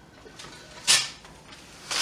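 A single short, sharp wooden clack from the floor loom about a second in, with a few faint taps before it.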